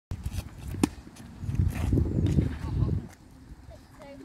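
A tennis racket strikes a ball with one sharp pop a little under a second in, followed by a stretch of low rumbling noise from about one and a half to three seconds.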